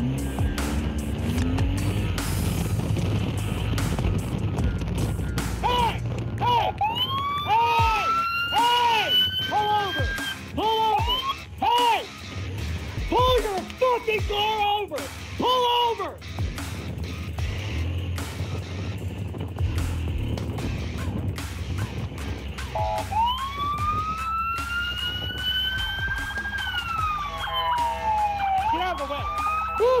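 Motorcycle-mounted police-style siren sounding: a long rising and falling wail, with a middle stretch of rapid short up-and-down whoops, over the steady rumble of the motorcycle riding in traffic.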